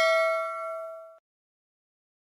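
A bell-chime "ding" sound effect for a notification-bell animation, ringing on with several steady tones and fading, then stopping abruptly a little over a second in.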